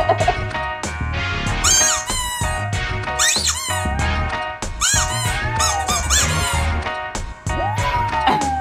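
A squeaky toy squeezed several times, with a pug howling back at it, its cry rising and falling near the end, over background music with a steady beat.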